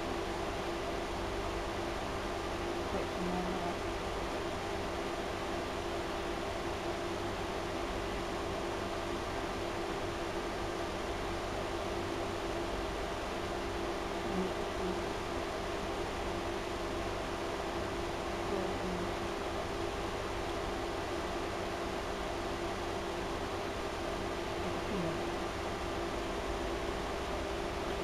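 Steady background hiss with a low, constant hum, unchanging throughout, with no distinct sounds standing out.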